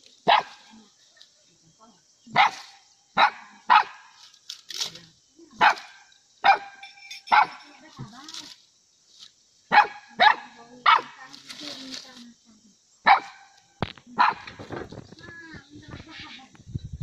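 Village hunting dog barking in short, sharp, high barks, about a dozen spaced irregularly, at something hidden in the undergrowth where mice or snakes seem to be.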